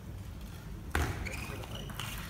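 Table tennis rally: a sharp click of the celluloid ball off a bat or the table about a second in, followed by brief high squeaks of the players' shoes on the court floor.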